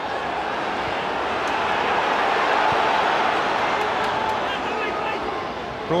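Football stadium crowd noise: many voices at once, growing louder towards the middle and easing off near the end.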